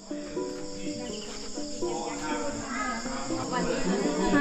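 A steady, high-pitched drone of chirring insects, with music and voices over it that grow louder toward the end.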